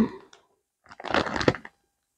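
A plastic-wrapped pack of wax melt cubes being handled and a cube broken out of it: a short burst of crackling and snapping about a second in.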